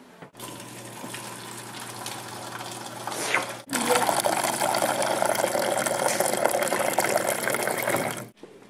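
Refrigerator door water dispenser pouring a stream of water into a paper cup, with a low steady hum. The sound breaks off for a moment near halfway and comes back louder.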